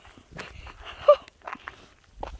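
Footsteps on outdoor steps, a run of short, uneven scuffs and taps, with one sharper, louder tap about a second in.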